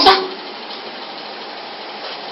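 The tail of a spoken word, then steady, featureless background noise: an even hiss of room tone with nothing standing out.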